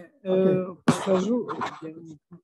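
A man's voice: short, unclear spoken sounds, with a noisy burst about a second in, like a throat clearing.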